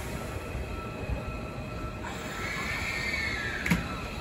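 Hankyu 7000-series electric train starting to pull away from the platform, a steady rumble with a faint high whine. Partway through, a high tone rises and falls in pitch, and a sharp click comes near the end.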